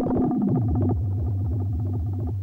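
Synthesizer intro music: a sustained synth tone over a low bass that comes in about half a second in and pulses evenly, about five times a second.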